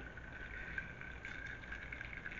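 Ice cubes clinking faintly in a rocks glass as a cocktail is stirred with a plastic straw, the light ticks mostly in the second half. A steady faint high whine runs underneath.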